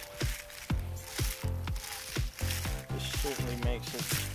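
Garden Weasel nut gatherer's wire-cage basket rolling over a lawn. Acorns click and rattle as they pop into the cage and tumble among those already in it, with irregular sharp clicks every half second or so.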